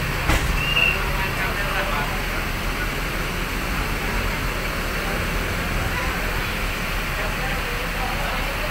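Steady background ambience of people talking and vehicle traffic, with a sharp knock about a third of a second in and a brief high squeak just after.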